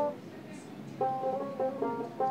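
Background instrumental music with plucked-string notes; it drops low for about the first second, then picks up again.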